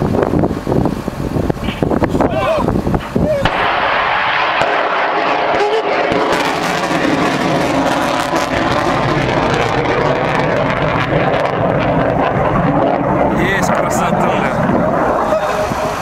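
P-800 Oniks (Yakhont) supersonic anti-ship cruise missile launching, loud: a crackling, rumbling blast for the first few seconds, then from about three and a half seconds a steady rocket roar that holds as the missile flies away.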